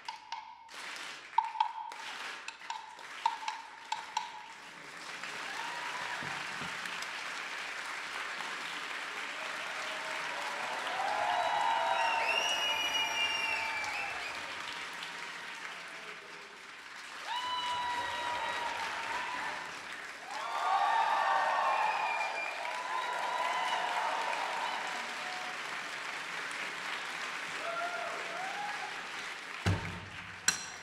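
A few sharp percussion strikes in the first four seconds, then sustained audience applause with cheers and whistles, swelling louder twice.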